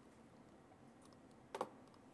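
Near silence: faint room tone, broken by one short click on the presentation laptop about one and a half seconds in.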